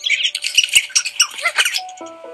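Cartoon heron chicks squawking and chirping, rapid overlapping begging cries that stop shortly before the end, over soft background music. A single sharp click sounds about a third of the way in.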